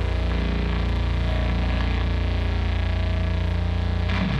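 Heavily distorted doom metal guitars and bass holding one low, droning chord, with a new riff starting right at the end.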